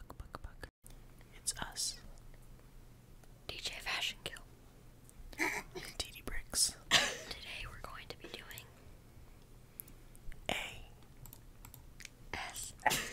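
Whispering close to a microphone in short separate bursts, ASMR-style, with faint mouth clicks between them.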